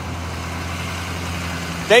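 Armored police vehicle's engine idling with a steady low hum.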